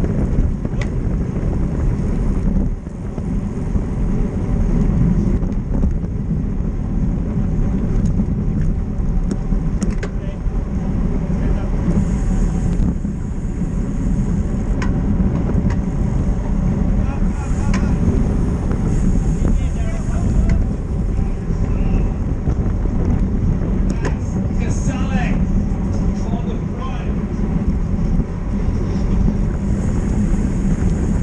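Wind rushing over a bike-mounted camera microphone at racing speed of about 42 km/h, with tyre and road noise from the bicycle in a criterium group. Brief voices cut in about three-quarters of the way through.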